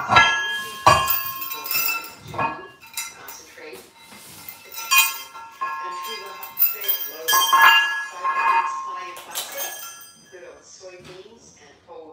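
Steel dip-belt chain and iron weight plates clanking and clinking together as weights are loaded onto the belt: a string of sharp metallic clanks with ringing, dying down after about ten seconds.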